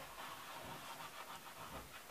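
White chalk scraping and rubbing on a chalkboard as a figure's headphones are drawn, a run of short, faint strokes.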